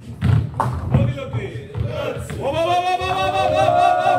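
A few heavy thuds and knocks of nine-pin bowling balls on the lanes in the first second, echoing in a large hall. Then, about halfway in, a long drawn-out shout of one or more voices begins and carries on to the end.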